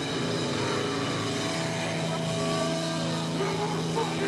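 Amplified distorted electric guitar tones held and ringing on over crowd noise, with no drums; a steady low note settles in about a second and a half in.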